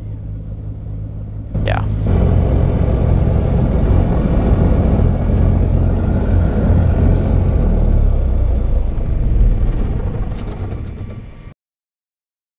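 Small general-aviation airplane's piston engine running, heard from the cockpit. It steps up in level about two seconds in, then fades out and cuts off shortly before the end.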